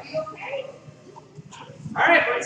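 Children's voices: scattered chatter and short high calls echoing in a large gym. The voices dip quieter in the middle and pick up again at the end.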